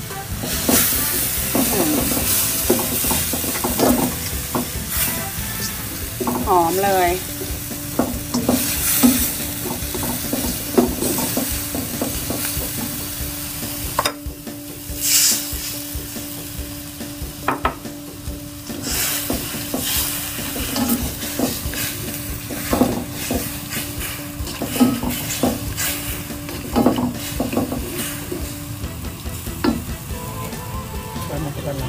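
Shrimp and chili paste sizzling in a stone-coated non-stick wok as a slotted spatula stirs and scrapes through them in repeated strokes. About halfway through, water is poured into the hot pan and the sizzle changes.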